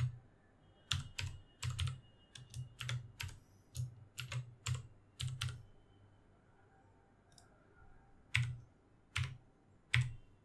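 Computer keyboard typing: a quick, irregular run of keystrokes for about five seconds, a pause, then a few single key presses near the end.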